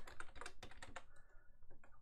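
Typing on a computer keyboard: a quick run of about ten keystrokes over the first second, then a few fainter taps.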